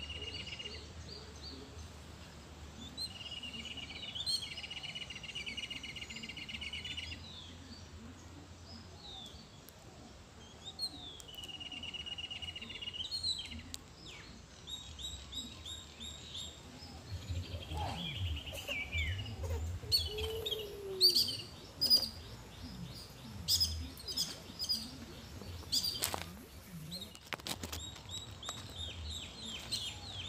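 Birds chirping and calling, with a high buzzing trill in the first few seconds. From about halfway on come many sharp clicks and taps among the chirps.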